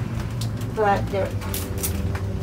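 Plastic bags rustling and crinkling as bananas are rummaged through by hand. A brief murmured voice sounds about a second in, over a steady low hum.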